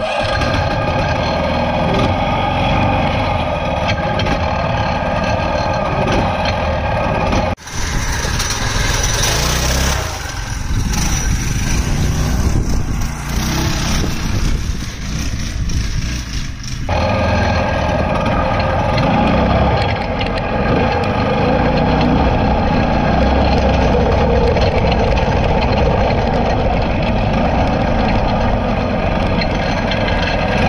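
Homemade go-kart's small engine running steadily as the kart is driven, heard close up from the frame. For about nine seconds in the middle it is heard from farther off, thinner and with more hiss.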